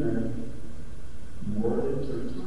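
A man's voice speaking over a public-address system, in two short stretches with a pause of about a second between.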